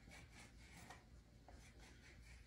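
Faint scraping of a plastic knife cutting through rolled dough against a wooden board, in several short strokes.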